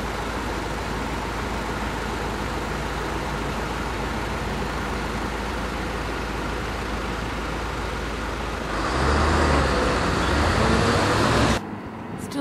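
Steady road traffic noise. About nine seconds in, a nearer vehicle's engine grows louder with a deep rumble and a slightly rising tone, then the sound cuts off abruptly.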